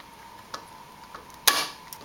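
Razor knife blade cutting through the melted plastic pegs of a door courtesy-light switch held against a metal vise. A few light ticks lead up to one sharp snap about one and a half seconds in.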